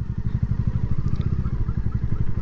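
Motorcycle engine running at low revs with a steady low beat.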